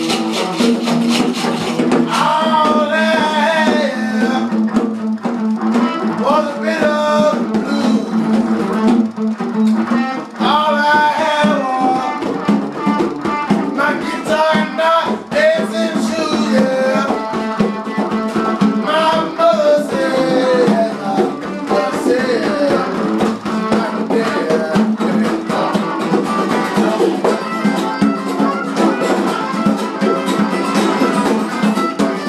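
A man singing and strumming a steel-string acoustic guitar, with a djembe hand drum beaten by hand alongside.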